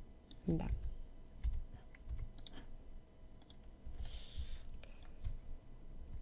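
Computer mouse buttons clicking irregularly, about one click or pair of clicks a second, as objects are selected and moved in a drawing program. A brief soft hiss comes about four seconds in.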